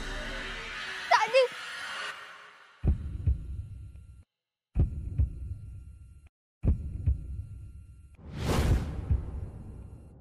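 Dramatic TV-serial sound design: three low booming hits, each followed by a throbbing, heartbeat-like pulsing that fades away. A whoosh swells and falls away near the end.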